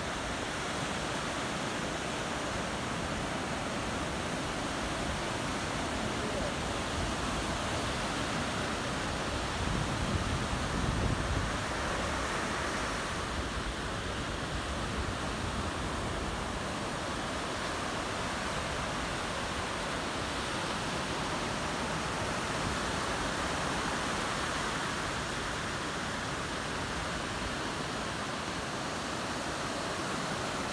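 Ocean surf washing up a sandy beach: a steady rush of small waves, swelling louder for a couple of seconds about a third of the way in.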